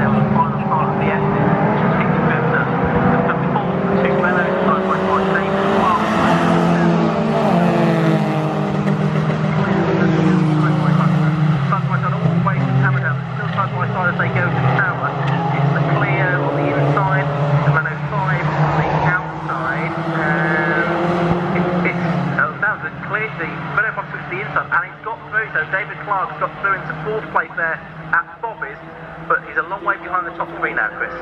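A pack of racing hatchback engines running hard as the cars pass on the circuit, several engine notes rising and falling together as they brake and accelerate. The engine noise drops away about 22 seconds in, leaving a fainter, uneven sound.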